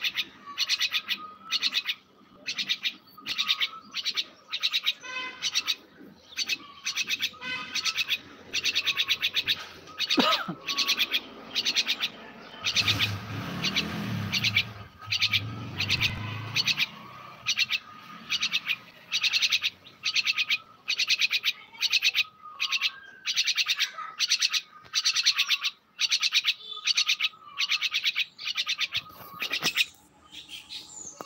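A myna calling over and over in quick repeated phrases, a new burst about every half second to second with only short gaps. A low rumble sits underneath for a few seconds about halfway through.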